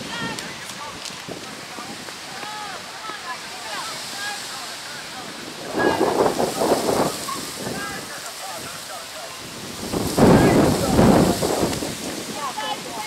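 Outdoor ambience on open water: steady wind noise on the microphone with many short chirps scattered through it, and two louder rushes of noise about six and ten seconds in.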